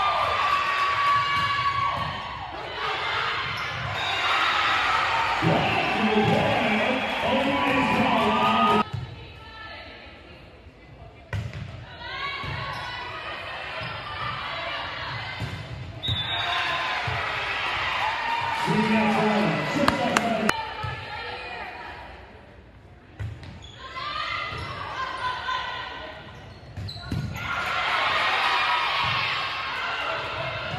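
Volleyball rallies in a reverberant gymnasium: the ball is struck and hits the floor, while players and spectators shout and cheer in stretches several seconds long, with quieter gaps between points.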